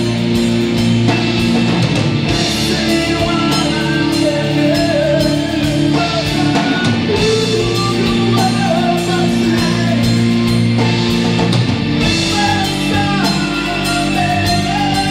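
Live progressive rock band playing an instrumental passage: keyboards, electric guitar, bass and drum kit, with a wavering melodic lead line over long held chords.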